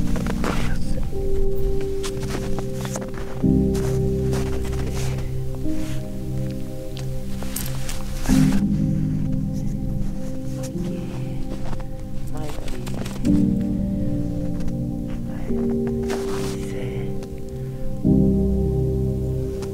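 Background music of slow, sustained chords that change every few seconds, with a few faint clicks and rustles.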